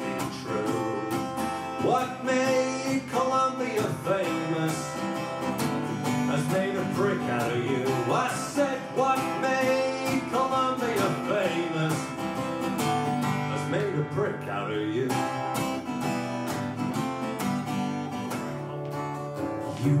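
Live acoustic guitar strummed steadily, with a man singing over it.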